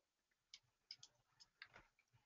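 Near silence with a few faint, short ticks, a computer mouse being scrolled and clicked.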